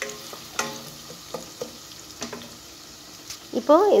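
Sliced onions sizzling in oil in a nonstick pan while being stirred with a wooden spatula, with a few short clicks of the spatula against the pan.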